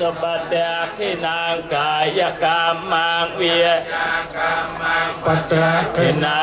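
Theravada Buddhist monks chanting Pali verses in unison, a continuous recitation in short rhythmic phrases.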